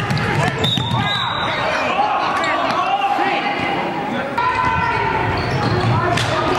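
Live game sound on a basketball court: sneakers squeaking in short sliding chirps on the hardwood floor and a basketball bouncing as it is dribbled. Indistinct voices of players and coaches are heard under it.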